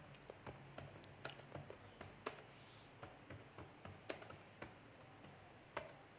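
Faint irregular clicking, a few clicks a second, over a faint low hum.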